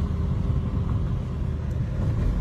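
Steady low rumble of road and engine noise inside a Toyota Vios sedan's cabin as it drives along a highway.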